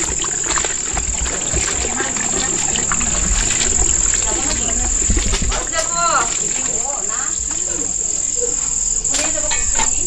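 A steady, high-pitched chorus of crickets carries on throughout. Over it, water sloshes and splashes as hands stir and rinse slices in a plastic bucket.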